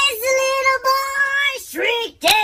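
A high-pitched voice singing without words: two long held notes, then a swoop upward near the end.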